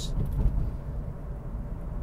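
A low, steady background rumble with nothing else standing out.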